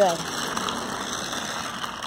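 New Bright 1/24-scale toy RC truck driving over pebbly concrete: a steady grinding rattle of its small motor and gears, with the tyres rolling over the stones.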